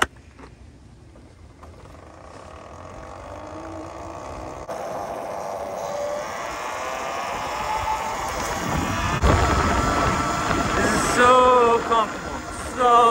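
Talaria Sting R electric dirt bike's motor whining and rising in pitch as the bike pulls away and picks up speed, with wind and road noise growing louder. A man's voice comes in near the end.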